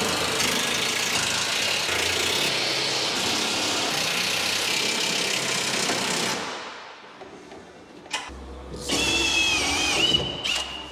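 An engine running steadily, then dying away about six seconds in.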